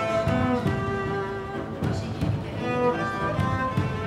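Background film score of bowed strings, cello and violin, playing held notes over a low pulsing bass.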